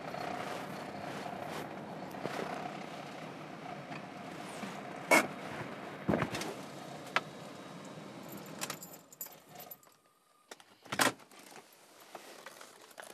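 A car running as it rolls up a gravel driveway and stops, with several sharp clicks and knocks about five to seven seconds in. The engine and tyre noise then drop away, and a louder short clunk of a car door comes near the end.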